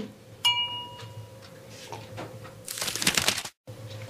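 A paintbrush clinks once against a glass rinse-water jar with a short ring, as the brush is washed. Near the end there is a rustling rub as the brush is dried off, and it stops abruptly.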